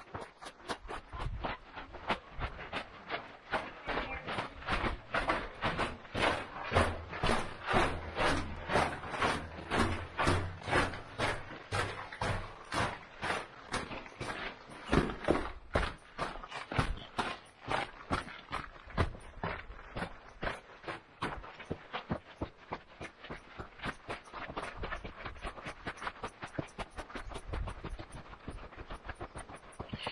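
Footsteps on a dry, gravelly rock-and-dirt hiking trail at a steady walking pace, about two steps a second, picked up close to the camera.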